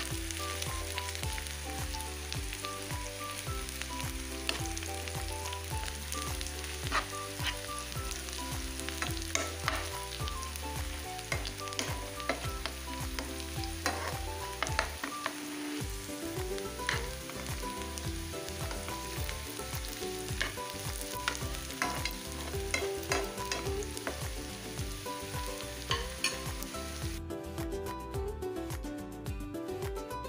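Sliced onions sizzling in hot oil in a nonstick frying pan as they brown, stirred with a spatula that clicks and scrapes against the pan.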